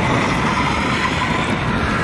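Toyota Camry Hybrid sedan driving past on asphalt, heard as a steady rush of tyre and wind noise.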